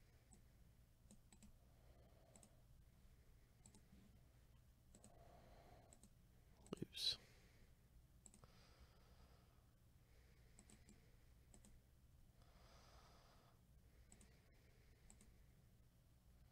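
Near silence with faint scattered clicks and one sharper, louder click about seven seconds in.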